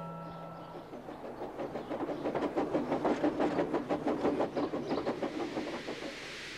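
Steam tank engine running, a quick even beat of puffs and wheel clatter that swells about a second in and eases off toward the end. A held note of music fades out in the first second.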